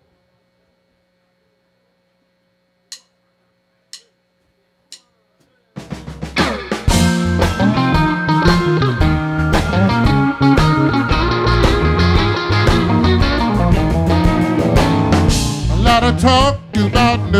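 Faint steady amplifier hum, then three sharp stick clicks about a second apart counting off, and a live blues band comes in together about six seconds in: electric guitars, keyboard and drums playing loud.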